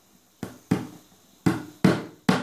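Four sharp knocks in two pairs, each ringing briefly: a hammer driving a small nail into a plywood board.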